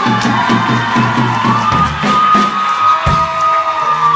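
Live rock band with drum kit, electric guitar and keyboard playing the closing bars of a song: quick repeated low notes for about two seconds, one hit about three seconds in, and a long high note held until near the end, with a crowd cheering.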